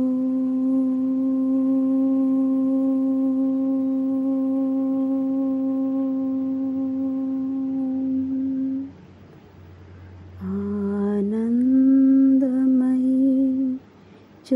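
A woman's voice chanting one long, steady held note for about nine seconds. After a short pause a second chanted note slides up in pitch and holds to the end.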